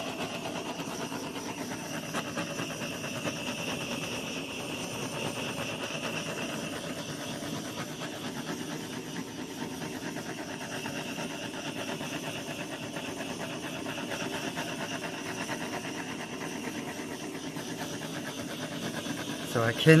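Small handheld gas torch burning on a low setting, a steady hiss as its flame is swept across wet acrylic pour paint to pop surface bubbles.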